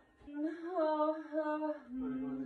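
A labouring woman's long, sustained vocal moan on one held pitch through a contraction, starting a moment in and wavering briefly before it steadies.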